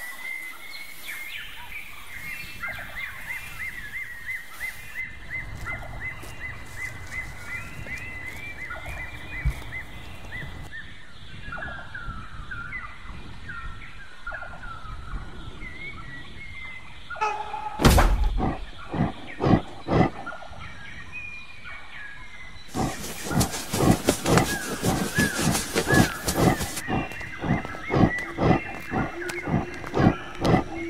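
Wild-animal sound effects over outdoor ambience: short, repeated chirping calls through the first third, then a few loud sharp thuds a little past the middle, and quick rhythmic thudding in the last quarter.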